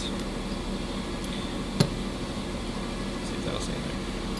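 Small steel control-arm parts handled on a workbench, giving one sharp metal click a little under two seconds in over a steady background hum.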